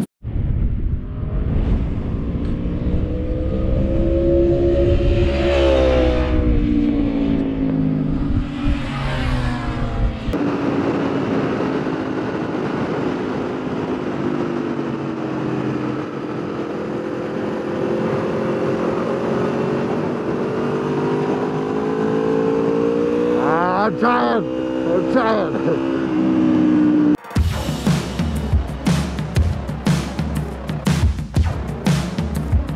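Motorcycle engines on a racetrack: two bikes pass close by, each engine note rising then falling. After an abrupt change, an onboard motorcycle engine runs at high, gently wavering revs, with another bike's whine rising and falling briefly near the end.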